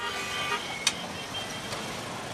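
Street traffic: motorcycles and cars running past, with a short horn toot at the start and a single sharp click a little under a second in.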